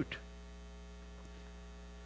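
Steady low electrical mains hum in the sound system, with a faint high-pitched whine above it.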